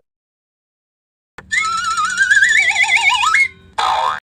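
Cartoon sound effect: a wobbling, whistle-like tone that climbs steadily in pitch for about two seconds, starting after a stretch of silence. A short noisy burst follows near the end.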